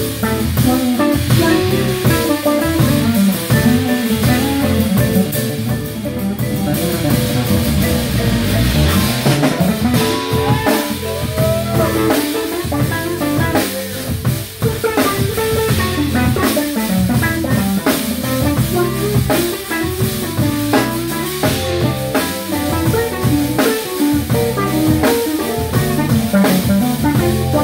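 A live instrumental band plays together: vibraphone struck with mallets, electric bass, drum kit and keyboards. The music runs continuously, with a moving bass line under ringing vibraphone notes and busy drumming.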